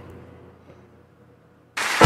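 Low room tone, then near the end a sudden loud burst of noise lasting about half a second.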